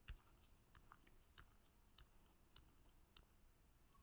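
Near silence broken by faint short clicks, about one every 0.6 seconds.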